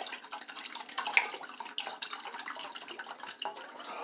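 Red wine poured from a glass bottle into a stainless steel saucepan: a steady splashing stream dotted with small irregular splashes.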